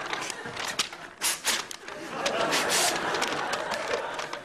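A sheet of paper being crumpled and rustled in the hands, heard as a run of crackling crinkles with a denser stretch of crumpling about two seconds in.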